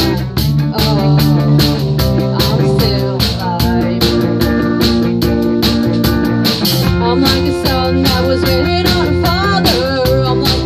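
A rock band playing an instrumental passage: electric guitar, bass guitar and drum kit, with cymbal hits keeping a steady beat under sustained guitar chords.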